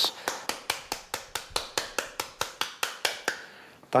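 The skin side of a halved pomegranate being smacked over a bowl to knock out its seeds: a quick, even run of sharp taps, about five a second, that stops about three seconds in.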